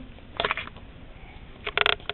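Two short bursts of rustling noise, one about half a second in and one near the end, with quieter room sound between them.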